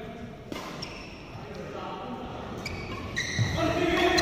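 Badminton rally in a large hall: a racket strikes the shuttlecock with a sharp crack about half a second in, followed by fainter hits and the squeak of shoes on the court mat. The sounds echo in the hall.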